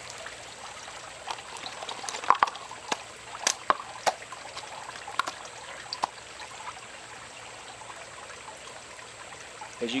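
Water trickling and dripping from a freshly sliced case of plastic water bottles, with scattered small taps as drops and pieces settle, mostly in the first half.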